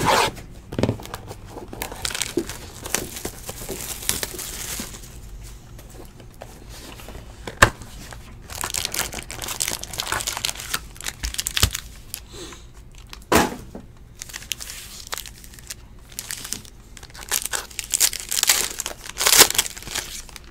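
Trading card hobby box opened by hand: cardboard and wrapping torn, and foil card packs crinkled and ripped open, in irregular bursts. A sharp click sounds about seven or eight seconds in, and another a little after thirteen seconds.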